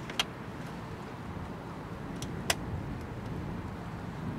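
Steady low outdoor rumble, with two short sharp clicks: one just after the start and one about two and a half seconds in.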